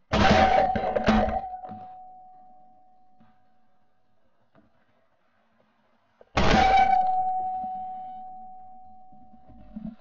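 Shotgun shots: two sudden bangs about a second apart, then a third about six seconds in, each trailing off into a fading ringing tone.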